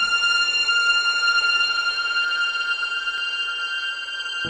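Opening theme music of a vintage TV police drama: one high note held steadily for about four seconds after the low opening notes stop.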